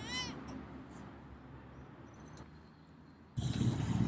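A cat's meow tails off in the first moment, followed by a quiet stretch. About three seconds in, a louder steady outdoor noise starts abruptly.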